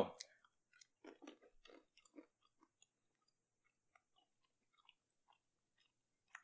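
Faint crunching of roasted peanuts being chewed, a quick run of crackles in the first couple of seconds, then only a few scattered soft clicks.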